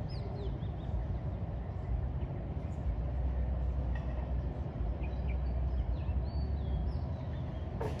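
Birds chirping and calling in short rising and falling notes over a steady low rumble of distant city traffic, with a sharp click near the end.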